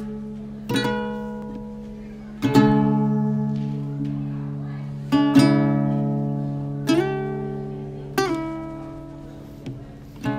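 Acoustic guitar played slowly, about six chords in ten seconds, each strummed and left to ring and fade before the next.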